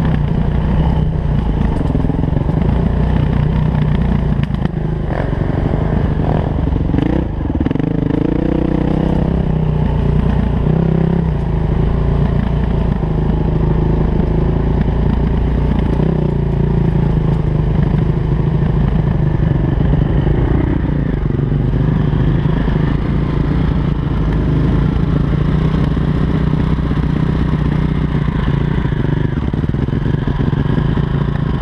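Dirt bike engine running continuously as the bike rides a rough forest trail, its pitch rising and falling several times between about seven and eleven seconds in. Knocks and rattles from the bike run through it.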